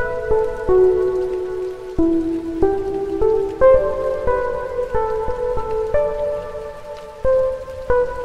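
Slow piano melody, single notes struck one after another about every half second, each ringing on and fading as the next begins.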